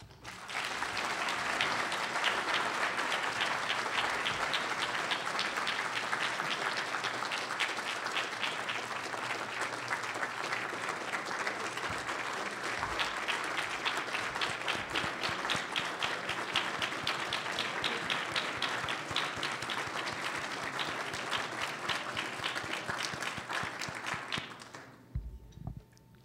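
Large audience applauding, a dense steady clapping that dies away near the end.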